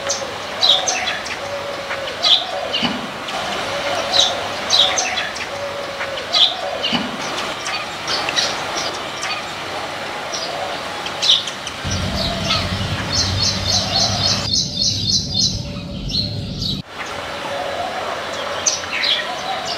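Small birds chirping off and on with short, sharp calls. Past the middle comes a quick run of rapid chirps, and a low rumble underneath that cuts off suddenly about a second before the end.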